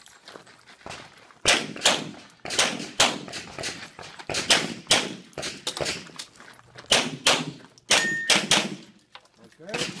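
Tanfoglio Stock II 9mm pistol firing rapid shots, mostly in pairs, with short breaks between groups as the shooter moves between positions; each shot has a short echo.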